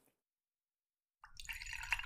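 Silence for about the first second, then water pouring from a plastic bottle into a tall drinking glass.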